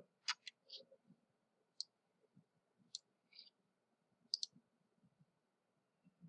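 Faint, scattered clicks of a computer mouse: about eight short clicks over the first four and a half seconds, with a quick pair a little after four seconds.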